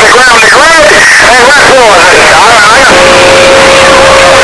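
Loud, noisy two-way radio voice traffic, a voice too rough to make out words, with a steady whistle tone coming in about three seconds in.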